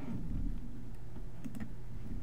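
A few faint, scattered clicks from a computer keyboard and mouse as the computer is switched from one program to another.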